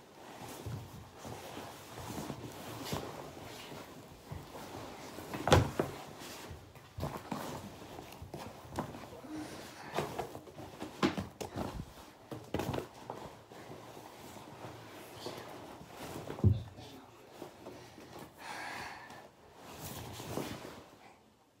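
Rustling of clothing and scattered knocks as a boy shifts and handles hoodies in a bathtub, with two louder thumps, about a quarter of the way in and again about three quarters through.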